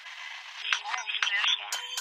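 A rap song starts playing about half a second in, after a faint hiss: vocals over a steady backing, thin and without bass as if heard through a radio.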